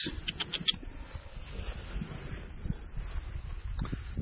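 Outdoor background with a few quick high chirps about half a second in, typical of a small bird, over low rumbling wind and handling noise on the microphone.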